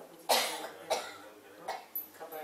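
A person coughing twice, a little over half a second apart, followed by a couple of smaller short throat sounds near the end.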